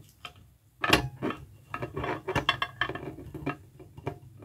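Small plastic clicks and taps from handling a Super7 TMNT Ultimates Donatello action figure while fitting its bow staff into the figure's hand. One sharper click about a second in, then a run of quick light ticks.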